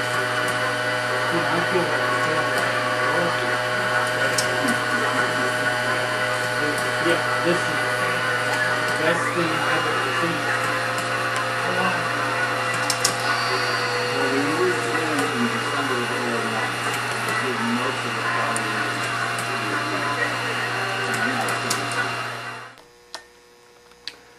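Motorized O-gauge carnival accessories (Ferris wheel, swing ride, carousel) running together: a steady whirring of small motors over a strong electrical hum, with a shift in the mix about nine seconds in. The sound stops abruptly near the end.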